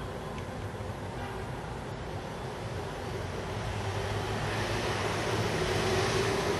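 Steady rushing background noise with a faint low hum, slowly growing louder.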